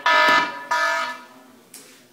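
Alarm clock beeping: a repeated electronic tone with many overtones, about one and a half beeps a second, that stops after the first beep, about half a second in, as the alarm is switched off.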